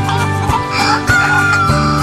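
A rooster crowing once, about a second long, over background music.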